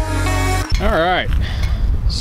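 Background music that stops abruptly about a third of the way in. It gives way to the low, steady running of a small Craftsman front-tine rototiller's engine, with a brief wordless sound from a man's voice.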